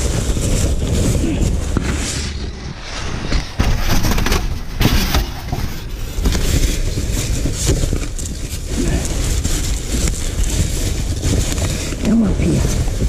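Plastic bags, bubble wrap and paper crinkling and rustling as gloved hands rummage through packing rubbish, with a few knocks and a steady low rumble underneath.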